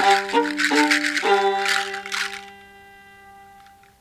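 Solo fiddle playing a quick run of separately bowed notes over a sustained low drone note. It then holds a final note that fades away over the last two seconds.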